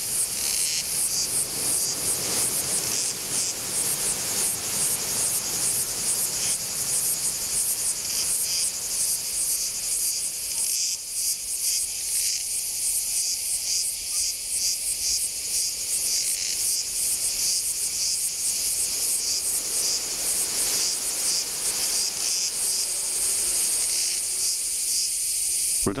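A dense, high-pitched chorus of insects shrilling with a fast pulsing beat, steady throughout, over a fainter outdoor haze.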